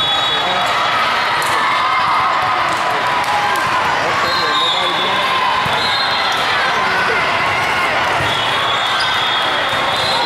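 Steady din of a busy indoor volleyball tournament hall: many overlapping voices talking and calling, with volleyballs bouncing on the court floors now and then.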